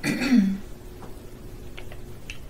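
A person clears their throat once, briefly, right at the start. After that only faint room sound remains, with a few soft clicks.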